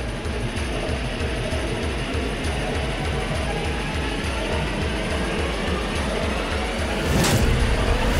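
Suspenseful TV background score built on a fast, steady low pulse under a sustained drone. Near the end a whoosh sweeps in and the music swells louder.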